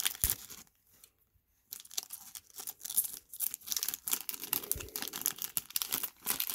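Trading-card pack wrapper crinkling and tearing as the cards are pulled out of it, in a dense run of crackles after a short pause about a second in.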